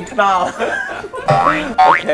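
People talking, with a wobbling tone and two quick upward-sliding, boing-like glides in the second half.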